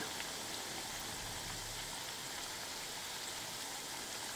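Chakli (rice-flour spirals) deep-frying in hot oil in a pan: a steady, even sizzle from the bubbling oil, the sign that the chakli are still frying and not yet crisp.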